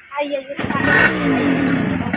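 A motor vehicle passing close by: a loud engine rush that starts about half a second in, its pitch falling as it goes past.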